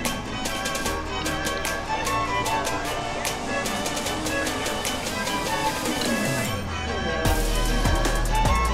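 Background music with a rapid, steady percussive beat over sustained pitched notes and a bass line. Near the end the beat drops out for a moment, then a section with heavier bass comes in.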